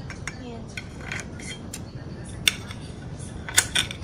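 Kitchen scissors snipping grilled meat in a glass bowl: scattered sharp metal clicks, the loudest about two and a half and three and a half seconds in.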